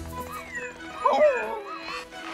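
Cartoon dinosaurs calling: a few short squawks that slide up and down in pitch, over background music.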